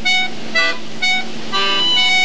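Accordion playing a series of short, detached notes and chords, about four in quick succession.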